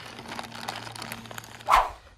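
Plastic bag of small plastic fence parts rustling and crinkling as hands dig through it, with faint small clicks. A brief, louder sharp sound comes near the end.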